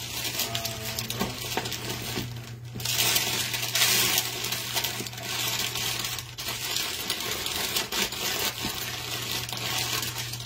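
Irregular light clicks and crinkly rustling over a steady low hum, louder for a couple of seconds in the middle.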